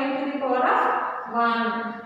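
Speech only: a woman's voice talking, as in classroom explanation.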